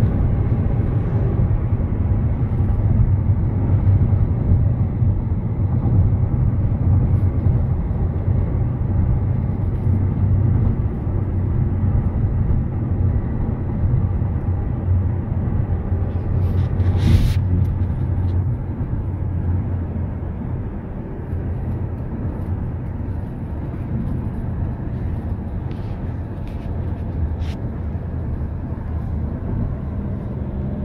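Steady low rumble of road and engine noise heard inside a moving car's cabin at cruising speed. There is a single brief sharp click about halfway through, and a few faint ticks later on.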